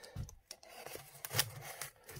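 Folding utility knife blade slicing along the edge of a small cardboard box: a few short scratchy cuts, the loudest about a second and a half in.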